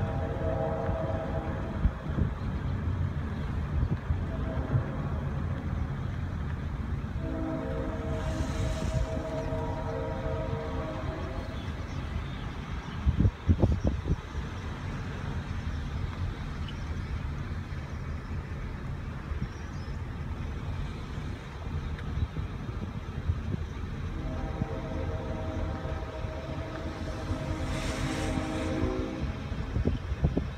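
A horn sounding a chord of several steady tones in long blasts, three times: one ending just after the start, one about seven seconds in, one near the end. A steady low rumble runs underneath, and there is a brief knock a little before halfway.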